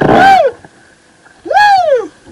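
A man whooping in excitement, two high calls that each rise and then fall in pitch: one right at the start and one near the end.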